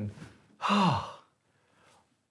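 A person's short breathy sigh with falling pitch, a little over half a second in.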